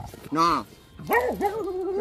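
Beagles whining and howling in two calls: a short rising-and-falling one about half a second in, then a longer one held at a steady wavering pitch from about a second in.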